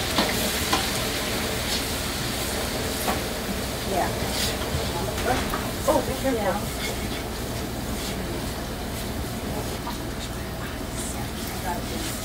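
Hot oil in a large steel stockpot sizzling after ingredients are poured in, stirred with a spoon that scrapes and clicks against the pot now and then; the sizzle eases slightly as it goes on.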